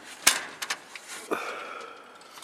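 Aluminium louvred greenhouse vent being opened by hand: a sharp click, two lighter clicks, then a thin steady squeak lasting about a second.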